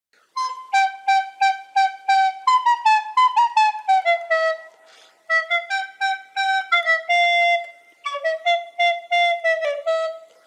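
A solo woodwind pipe plays a melody in short, detached notes. It opens with a run of repeated notes, then falls in stepwise phrases and holds one longer note a little past the middle.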